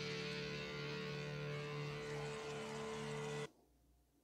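Live rock band's electric guitars ringing out a sustained chord at the close of a song, heard through the concert recording; it cuts off suddenly about three and a half seconds in.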